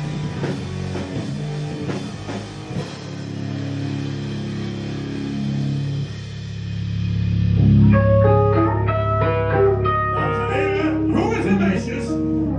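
Death/thrash metal band playing live: drums and distorted guitars together for the first few seconds, then the drums drop out and low guitar and bass notes ring on. From about eight seconds in a guitar plays a line of single notes over the held low note.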